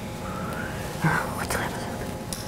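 Quiet, indistinct speech, soft enough to sound like whispering, over a steady room hum, with a brief sharp click about three quarters of the way through.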